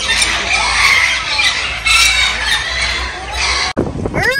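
Many aviary birds calling, squawking and chirping over one another in a dense, steady chatter. It cuts off abruptly shortly before the end.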